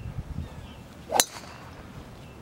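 A golf club striking a ball off the tee about a second in: one sharp, metallic click with a brief ring.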